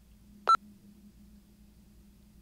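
A single short, high electronic beep about half a second in, over a faint low room hum.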